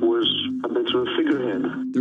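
Speech from a television news broadcast, with a narrow, radio-like sound and a steady background tone beneath it.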